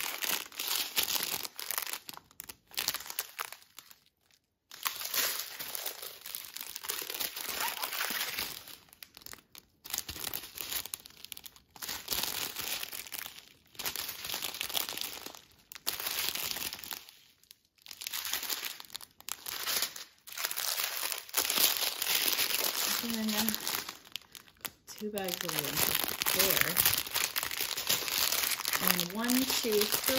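Small clear plastic bags of resin diamond-painting drills being handled and shuffled, crinkling in repeated irregular bursts with short pauses between.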